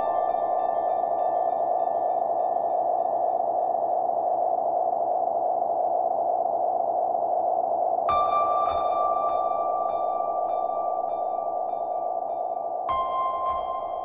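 Ambient electronic lounge music: a steady droning synth pad with long, ringing, bell-like tones. Fresh tones enter about eight seconds in and again near the end.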